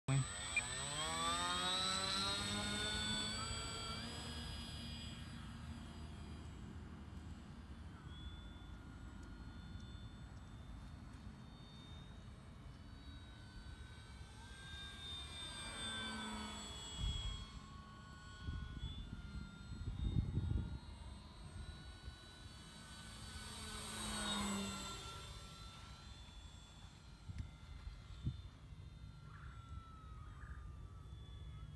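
Electric motor and propeller of an E-flite PT-17 radio-control biplane throttling up with a rising whine for takeoff, then droning steadily in flight. The sound swells and sweeps in pitch as the plane passes by, about halfway through and again at about four-fifths of the way through, with low rumbling bumps between the passes.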